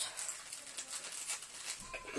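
Faint eating noises: soft, irregular clicks and smacks of someone chewing and licking food from his fingers.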